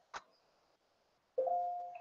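A single mouse click, then about 1.4 s in a short electronic chime: two steady tones sounding together that start suddenly and fade over about half a second, like a computer notification sound.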